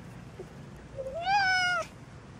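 A domestic cat meowing once, a single meow about a second in that rises in pitch, holds, and then stops abruptly.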